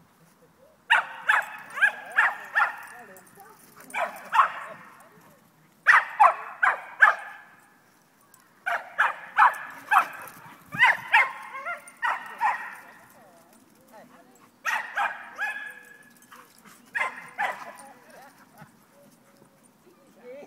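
Young Schapendoes dogs barking in play: short runs of three to five quick, sharp barks, a new run every two to four seconds, with quieter gaps between.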